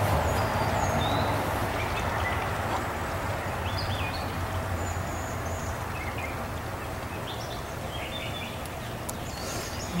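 Outdoor background noise: a steady rushing rumble that slowly fades, with a few faint bird chirps scattered through it.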